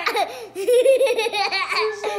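Toddler laughing hard: a quick string of high-pitched ha-ha laughs starting about half a second in.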